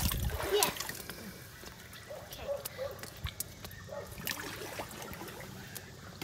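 Pool water splashing and sloshing close to the microphone at the waterline: a louder splash in the first second, then lighter lapping with a few small sharp splashes.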